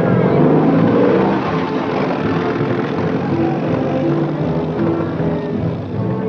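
Jeep engine running as the jeep pulls away down a dirt road, loudest in the first second, under the film's music score.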